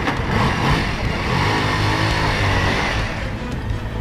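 Motorcycle engine revving, its pitch swelling and then fading about three seconds in, over music.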